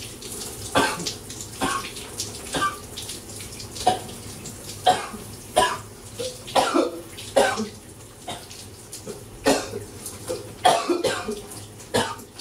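A man coughing in a long fit: about a dozen coughs roughly a second apart, with a short pause past the middle, over the steady hiss of a running shower. The uploader puts the fit down to a throat bug that won't let up.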